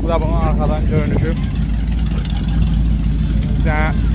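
Chevrolet Impala convertible's engine idling steadily with a low, even rumble, heard close behind the car, with brief voices over it.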